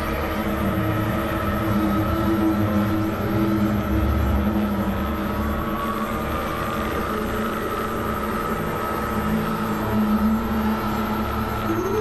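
Dense layered experimental electronic drones: several held synth tones over a low rumble and noise, with a rising tone coming in right at the end.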